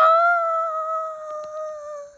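A child's voice holding one long, high 'daaa' note for about two seconds, its pitch sagging slightly as it fades.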